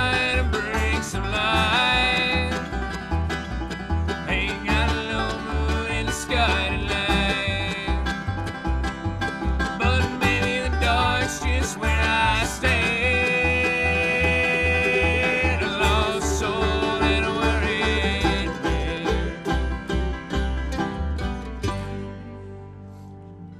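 Bluegrass string band playing live: banjo, acoustic guitars and mandolin over a steady upright-bass beat, with the sound falling away near the end.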